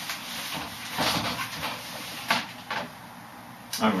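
Whiteboard eraser rubbing across the board in quick wiping strokes, followed by a couple of short knocks. A man's voice starts near the end.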